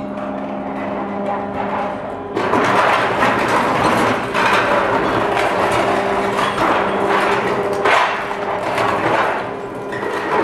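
Excavator-mounted hydraulic concrete crusher working a reinforced concrete column. At first the machine's engine and hydraulics drone steadily. From about two seconds in there is continuous loud crunching and grinding of breaking concrete, which swells and eases several times.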